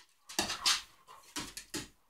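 Two dogs making play noises as they wrestle, in two clusters of short, rough sounds, the second about a second after the first.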